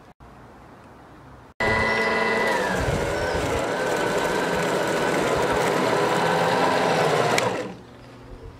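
An Allett battery-powered cylinder mower, fitted with a scarifier cassette, runs while being pushed across the lawn, its spring tines combing moss and thatch out of the grass. The motor and reel make a steady whine of several tones. It starts suddenly about one and a half seconds in, dips slightly in pitch soon after, and stops shortly before the end.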